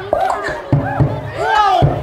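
A boy beatboxing into a microphone through a PA: a low kick-drum thump about every half second, with rising and falling vocal sweeps between the beats.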